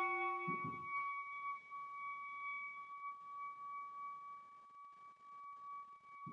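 E-flat clarinet holding a quiet sustained note. A lower tone sounds with it and drops out about a second in, leaving a thin high tone held to the end, with a brief low rush of noise near the start.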